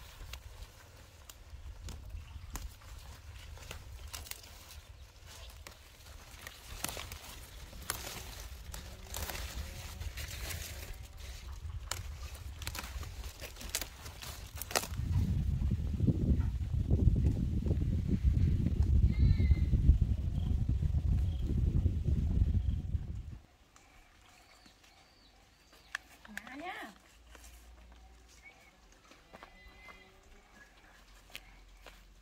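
Crackling and rustling of leafy stems being handled and snapped, a string of sharp clicks, then a loud low rumble for about eight seconds that cuts off suddenly.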